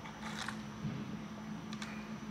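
Soft sipping of soda through a straw from a fountain-drink cup: a short suck about half a second in and a couple of small clicks near the end, over a steady low hum.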